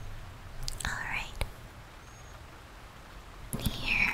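A woman's soft, close whispering and breathy voice sounds in a few short bursts, with a single click in between.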